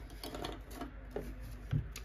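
Paper banknotes handled by hand: a stack of bills rustling and flicking, with light, irregular clicks and taps.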